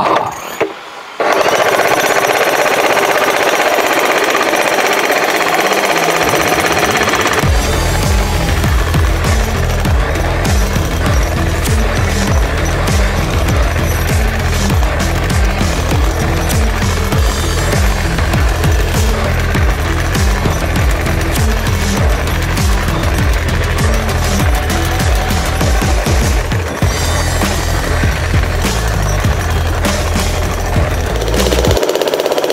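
Corded electric demolition hammer chiselling up a concrete screed, a loud, continuous rapid hammering that starts about a second in. From about seven seconds in, background music with a heavy bass beat comes in over the hammering.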